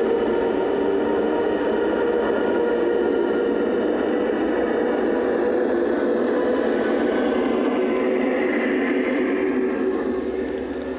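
LGB garden-scale model train, a red Rhaetian Railway electric locomotive hauling coaches, running past close by with a steady rolling hum of wheels on track.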